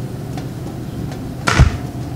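A single sharp thump about one and a half seconds in, over a low steady background hum.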